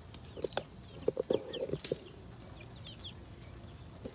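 Young chickens peeping in short, high calls throughout, with a cluster of short, louder low clucks between about half a second and two seconds in.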